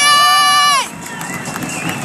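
A raised voice holding a long high shout that falls away and breaks off just under a second in, followed by a steady murmur of crowd noise.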